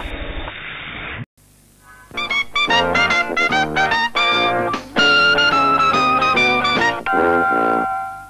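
A brassy jingle led by a trumpet plays quick runs of short notes and finishes on a held chord that fades out. Before it comes about a second of hiss-like noise that cuts off abruptly.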